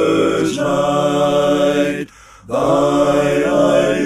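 Male a cappella hymn singing in multi-part harmony, holding sustained chords, with a brief break about two seconds in before the next line begins.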